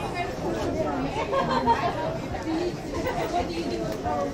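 Several people talking at once, voices overlapping in general chatter, with no single voice standing out.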